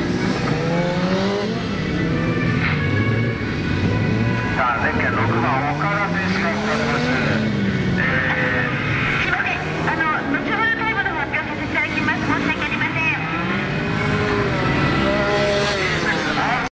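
Yamaha FZ1 Fazer's inline-four engine being revved up and let fall again and again as the bike is worked through tight turns, the pitch climbing and dropping every second or two.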